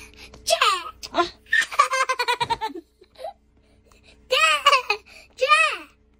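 A young boy laughing: a short laugh, then a long run of quick even laughs, and two more high-pitched laughs near the end.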